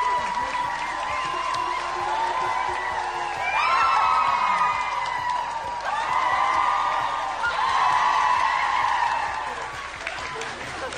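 A crowd of voices singing together in long, high held notes, with swells about a third of the way in and twice more in the second half, fading near the end.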